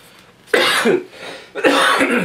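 A man coughs twice, the two coughs about a second apart.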